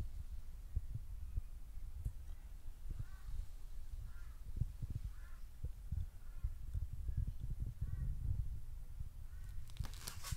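Handling noise from a handheld camera: a low, irregular rumble with soft thumps. A few faint short chirps come about three, five and eight seconds in.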